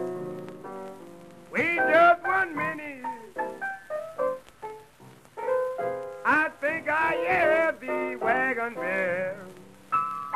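A 1932 blues piano record with a male voice joining the piano in two long phrases of bending, wavering notes with no clear words, the first about a second and a half in and the second about halfway through. The piano plays alone at the start and near the end.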